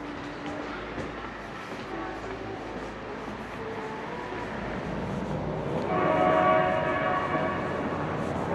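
A train horn sounding a chord of several notes at once, starting about six seconds in and held for about two seconds over steady street background noise.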